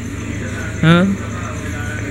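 A steady low hum of background noise, with a single short spoken "Ha?" about a second in.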